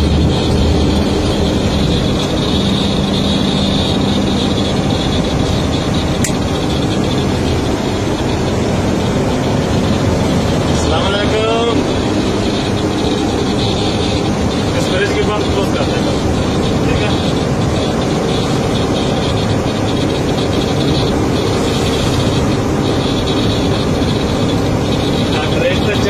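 Mobile crane's diesel engine and road noise heard from inside the cab while it drives at speed: a steady drone with a deep engine hum beneath it. A brief wavering pitched sound comes through about eleven seconds in.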